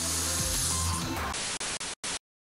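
Background music under a hiss of static-like noise. About one and a half seconds in, the music drops away, and the hiss stutters in short breaks before cutting off suddenly.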